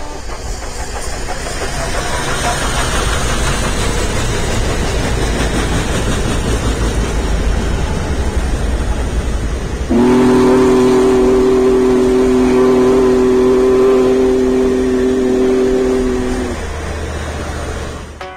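Union Pacific Big Boy 4014 steam locomotive's whistle, one long steady chord of several notes, starting abruptly about ten seconds in and blown for about six seconds over the low rumble of the passing train. Before it there is a steady rumbling noise.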